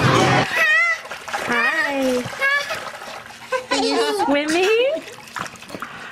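Restaurant chatter cuts off about half a second in, giving way to light splashing in shallow water under the high voices of a baby and a woman.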